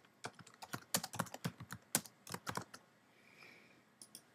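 Computer keyboard typing: a quick, irregular run of keystrokes entering a short line of text, stopping about two-thirds of the way through.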